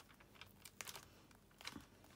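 Faint handling of clear photopolymer stamps and their plastic case: a few short, sharp plastic clicks and crinkles as a stamp is peeled off and moved.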